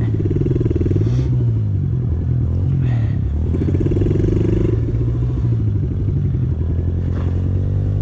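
Pit bike engine running and revving up and down several times as the bike is ridden back and forth over a freshly built dirt jump to pack it down.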